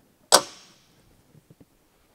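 A boat's anchor locker lid shut in the foredeck with one sharp clap that rings away over about half a second, followed by a couple of faint clicks.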